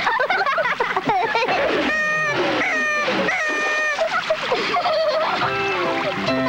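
Cartoon soundtrack: wavering, sing-song voice cries, then three short held notes, with background music coming in near the end.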